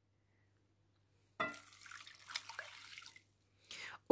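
Cold water poured from a glass cup into a saucepan of dry herbs and spices. It starts with a sudden splash about a second and a half in and runs on for under two seconds before dying away.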